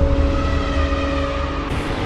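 Cinematic logo-intro sound effect: a deep rumble under several held tones, with a new sharp hit coming in near the end.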